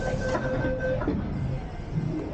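MTR train's door-closing warning tone, a steady pulsing beep, that stops about a second in as the doors shut with a short knock. Steady rumble of the stopped train throughout.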